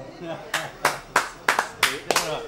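Hand claps in a steady rhythm, about three a second, starting about half a second in, with voices faintly heard between them.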